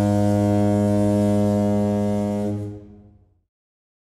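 A foghorn sounding one long, steady low blast that dies away about three seconds in.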